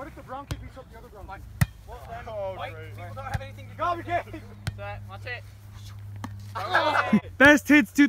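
Young men's voices talking and calling out during a pickup volleyball game on grass, with several sharp single smacks of hands hitting the volleyball. The shouting gets louder near the end.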